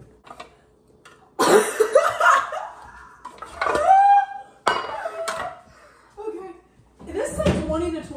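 Young women laughing and shrieking, with a sudden clatter and a couple of sharp knocks from a metal muffin pan being handled.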